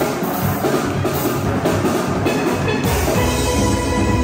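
Live steel pan band playing, many steel pans ringing out a tune together over a drum kit beat. The bass grows fuller about three seconds in.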